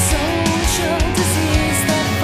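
Gothic rock band recording: electric guitar over bass and drums at a steady beat, with regular cymbal hits and a wavering melodic line on top.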